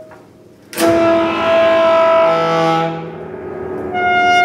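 Saxophone and grand piano playing a contemporary chamber piece. After a brief hush, a sudden loud chord sounds about three-quarters of a second in, then rings and fades over about two seconds. New held notes begin near the end.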